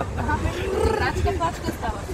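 People's voices, pitched and drawn out, over a low steady rumble.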